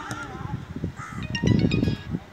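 Players calling out across an outdoor football pitch. About a second and a half in comes a loud, low rumble with a few short, high chirps over it.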